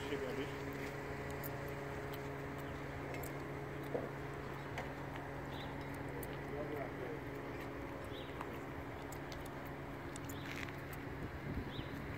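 An engine idling steadily, a low even hum, with faint voices and a few brief high chirps in the background.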